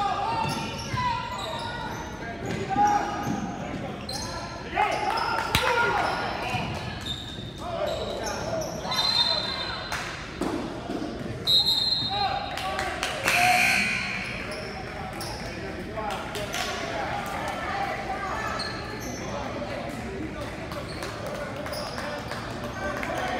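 Basketball bouncing on a hardwood gym floor during play, mixed with shouts from players and spectators, echoing around a large gymnasium.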